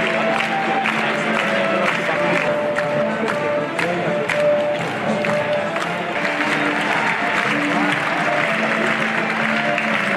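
A large crowd applauding, with music of long held notes sounding over the clapping.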